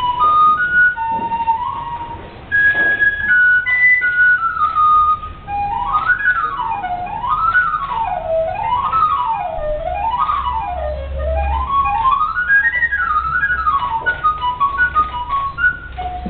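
Solo wooden recorder playing a melody: a few held notes stepping around first, then quick runs sweeping up and down, ending in fast short notes.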